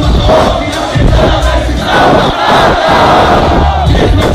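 Concert crowd shouting together in unison, loudest in the second half, over the bass of a hip-hop beat from the PA.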